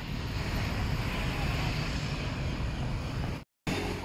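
Street traffic noise: a steady wash of passing cars and motorbikes. It breaks off for a moment near the end, then resumes.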